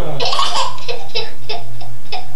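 Toddler laughing: one longer burst of laughter, then a run of short giggles about three a second, over a steady low hum.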